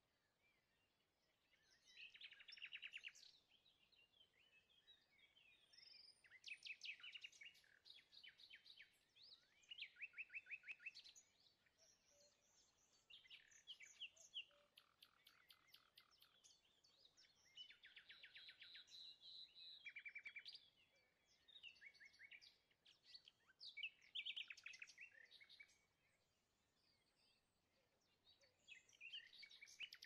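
Faint songbirds chirping and trilling in short, quick phrases that come every second or two, with brief pauses between them.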